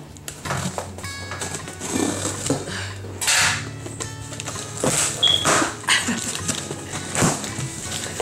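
Background music with sustained low notes, over several short bursts of rustling and ripping as a mail package is torn open by hand.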